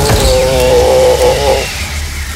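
A cartoon ogre's long, drawn-out scream, "Aaaaa-", held on one pitch as a magic beam strikes him and he fades away, cutting off near the end. Under it runs a hissing magic sound effect with a faint falling tone and a low rumble.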